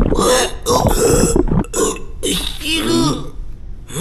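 A cartoon character's voiced burp among a few short wordless vocal sounds.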